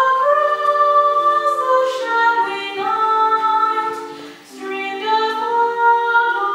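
Small mixed vocal group of two women and two men singing in harmony in a church, holding long notes in several parts that move together, with a short break between phrases about four and a half seconds in.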